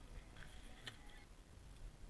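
Faint clicks from clear plastic tackle boxes being handled inside a backpack: a couple of short clicks, the clearest about a second in, over near silence.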